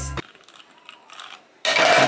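Handling noise from objects being moved: a few faint clicks, then a sudden loud clatter of hard objects near the end.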